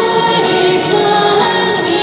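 A woman singing a ballad live into a hand microphone over a backing track, amplified through a portable speaker, holding long notes.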